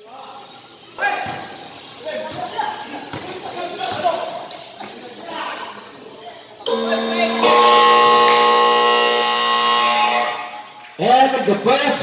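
Voices and a few ball bounces echo around a basketball court, then about seven seconds in an electric game buzzer sounds one loud, steady tone for about three and a half seconds.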